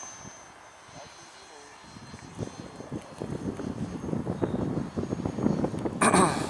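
80 mm electric ducted-fan model jet (an RC L-39) flying overhead, its rushing sound growing louder from about two seconds in as it comes by.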